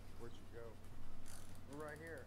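Faint voice-like sounds from a replayed ghost-hunting recording: a few short, wavering vocal sounds, with a brief hiss about a second and a half in.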